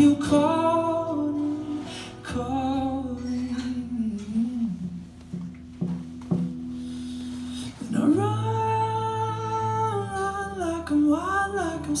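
Live solo performance: a man's wordless sung or hummed vocal line over acoustic guitar. The voice drops out for a few seconds midway, leaving the guitar alone, then comes back in more strongly.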